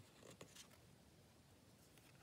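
Near silence, with a few faint soft clicks and a brief rustle in the first half second as a tarot card is slid off the deck and laid on the cloth-covered pile.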